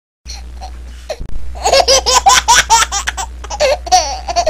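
High-pitched laughter: from about a second and a half in, a fast run of loud, shrill ha-ha syllables, over a steady low hum.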